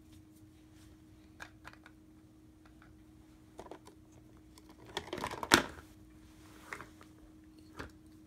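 Hard plastic toy food and oven parts clicking and knocking together as they are handled, in scattered light clicks. A busier clatter ends in the loudest knock about five and a half seconds in.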